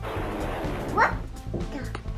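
Cartoon explosion sound effect: a sudden burst of noise lasting about a second, over background music.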